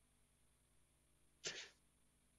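Near silence on a video-call line, broken about one and a half seconds in by a single short, hissy burst of noise.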